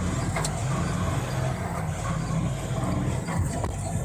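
Truck engine and road noise heard inside the cab as the truck drives off, a steady low rumble, with a sharp click about half a second in.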